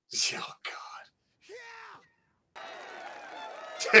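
Men's short exclaimed "oh" and breathy reactions. Then faint background sound from the episode rises and turns loud near the end, with a burst of laughter and music.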